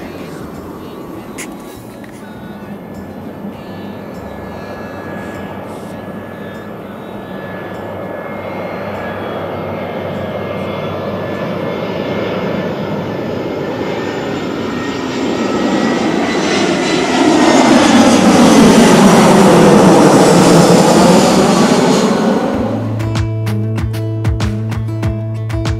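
Jet airliner on final approach passing low overhead: its engine noise builds steadily to a loud peak, the pitch sweeping down and up again as it goes over. The sound cuts off near the end, where music begins.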